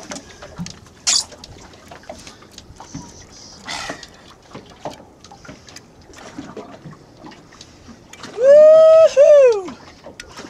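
Water splashing and sloshing around the boat with scattered short knocks. Near the end comes a loud, drawn-out whoop from a man: it rises, holds, breaks once and falls away.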